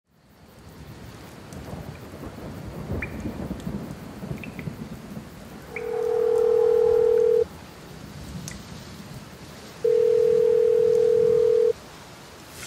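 Sound-design intro: a rain-and-thunder storm ambience fades in with low rumbling and a crack about three seconds in. Over it, a steady electronic telephone-like tone sounds twice, each for just under two seconds.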